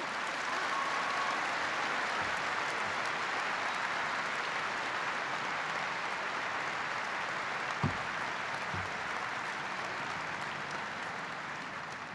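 Large audience applauding steadily, easing off slightly toward the end.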